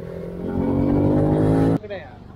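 Yamaha Y15ZR's small single-cylinder four-stroke motorcycle engine accelerating under way, its note rising steadily and getting louder, then cutting off suddenly near the end.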